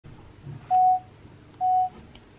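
Two short electronic beeps, each a single steady tone lasting about a third of a second, the second about a second after the first.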